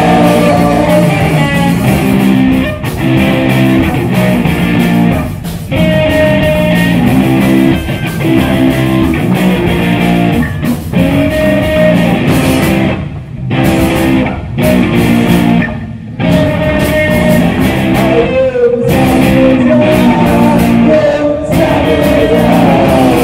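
Rock band playing live and loud: electric guitars, drums and vocals. The whole band stops for a split second several times, in a stop-start riff.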